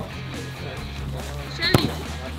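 A football struck once in a penalty shot, a single sharp thud near the end, over steady background music.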